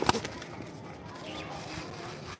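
Pigeon wings clapping twice in quick succession, then low steady flapping and rustling.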